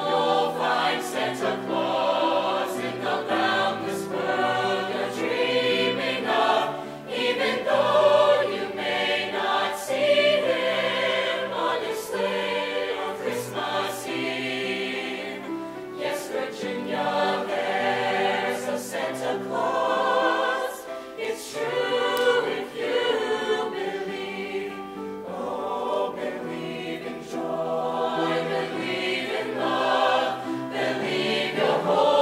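Mixed-voice show choir singing in harmony.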